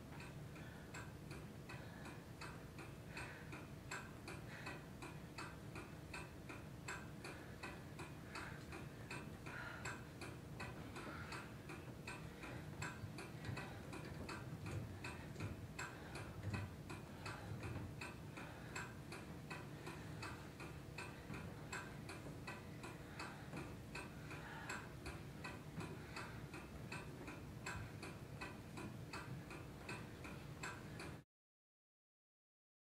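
Steady, quiet ticking, evenly spaced clicks repeating several times a second throughout.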